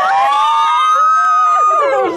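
Several young women shrieking together in one long high-pitched squeal that rises at first and is held for about two seconds before breaking off near the end: an excited cheer.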